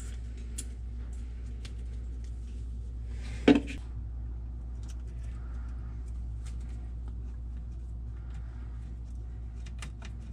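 Hands working electrical tape and wire connectors on fan motor wires: scattered small clicks and rustles over a steady low hum. One loud short sound falling in pitch stands out about three and a half seconds in.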